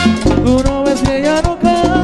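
Merengue band playing live: saxophone lines gliding over bass and a steady, driving percussion beat with shaker.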